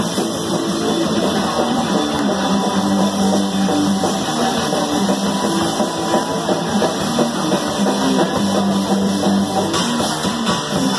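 Punk band playing live, an instrumental passage with no vocals: electric guitar and bass riffing over a drum kit.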